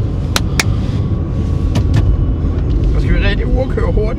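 Steady low rumble of a car's engine and road noise inside the cabin while driving, with a few sharp clicks, two about half a second in and two about two seconds in. A short burst of voice comes a little after three seconds.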